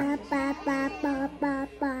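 A toddler chanting one short syllable over and over in a sing-song voice, about five even calls at roughly three a second. He is echoing the "hop" he has been asked to say.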